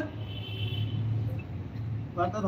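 A steady low hum in a pause between words, with a faint high tone for about half a second near the start.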